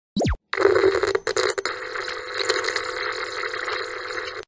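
Intro sound effect: a quick downward pitch swoop, then a steady, flickering electronic buzz and hiss like television static, with a few crackles.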